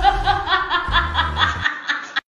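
A person laughing in a rapid run of short, high-pitched bursts, about six a second.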